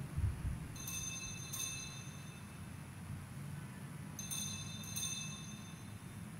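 Altar bells rung at the elevation of the chalice during the consecration: a couple of bright shaken rings about a second in, then another group about four seconds in, over a low church room hum.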